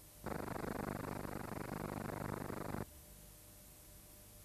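A harsh buzzing burst about two and a half seconds long, switching on and cutting off abruptly: playback noise from a worn videotape whose picture is breaking up.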